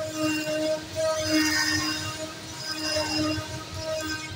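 Zünd digital flatbed cutter running a job on cardboard: a steady machine hum with a pitched tone that swells and fades every second or so as the tool head moves.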